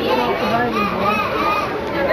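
Many people chattering at once, children's voices among them, as a steady babble with no single voice standing out.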